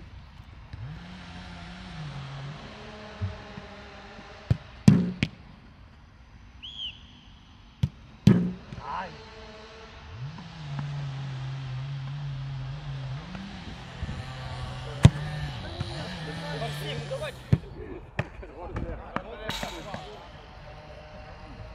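Football being kicked and caught in goalkeeper drills: a series of sharp thuds of ball on boot and gloves, the loudest about five and eight seconds in and several more near the end.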